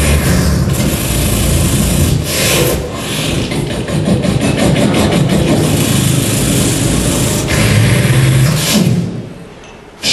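Loud rasping, crackling buzz played as the electric-current effect of a staged conduction test, dropping away about nine seconds in.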